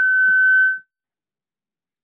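A loud, steady high-pitched squeal from the church PA that cuts off suddenly under a second in: a burst of microphone feedback.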